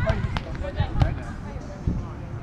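Beach volleyball in play: sharp slaps of hands on the ball, three in all, the loudest about a second in, mixed with players' short shouts and calls.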